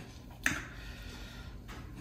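A spatula taps once, sharply, against a stainless steel mixing bowl about half a second in, then scrapes faintly for about a second as cake batter is scraped out.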